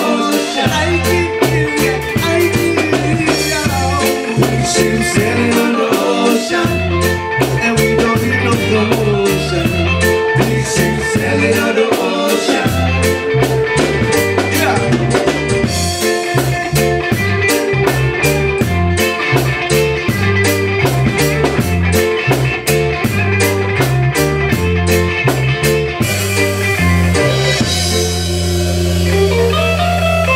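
Live band playing an instrumental stretch of a reggae song, with drum kit, bass line, keyboard and guitar. About 26 seconds in, the drums drop out, leaving held bass and keyboard notes.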